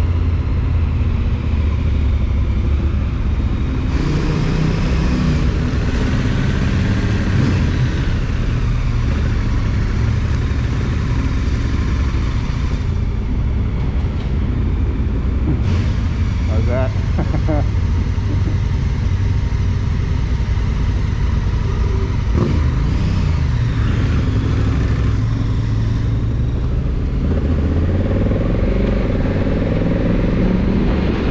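Motorcycle engine running at low speed, its revs rising near the end as the bike pulls away.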